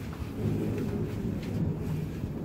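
Low, steady rumble of thunder, with a few faint drip-like ticks over it.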